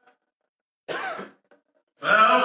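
A man clears his throat once, briefly, about a second in, during a pause in his speaking.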